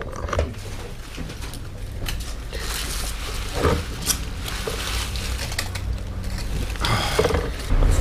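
Aluminium foil crinkling in several short bursts as a foil-wrapped meal is unwrapped and handled, over a low steady hum.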